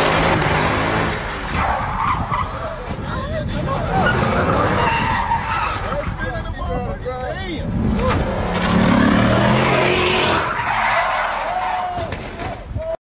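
A car doing a burnout in tight spins, its rear tyres squealing with a wavering pitch over the revving engine.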